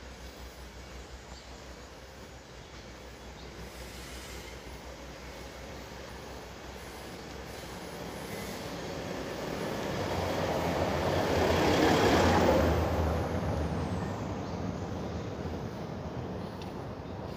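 A small truck drives past close by on a narrow street: its engine and tyres grow louder over several seconds, pass about three-quarters of the way through, then fade, with a low engine hum underneath.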